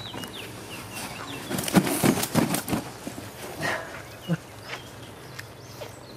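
A big carp thrashing on an unhooking mat, a quick burst of slaps and flaps about a second and a half in, then a few single knocks; birds chirp faintly at the start.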